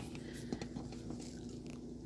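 Quiet room tone with a steady low hum and a few faint clicks and rustles of handling.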